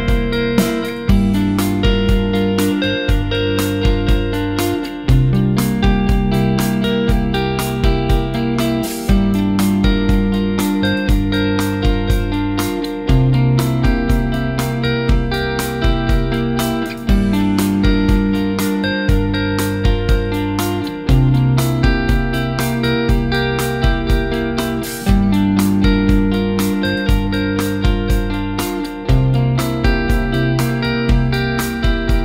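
A fully arranged song of electric guitar through a Strymon Dig V2 digital delay, set to dotted-quarter-note repeats synced to MIDI clock and played through a British-style 18-watt amp. The chords change about every four seconds over a steady beat.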